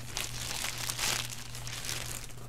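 Clear plastic bag crinkling and rustling as hands handle it and lift it off the table, loudest about a second in, over a faint steady low hum.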